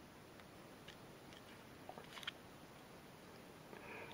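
Near silence with a few faint clicks from the small tweezers being slid back into their slot in a Swiss Army knife's scale, the clearest about two seconds in.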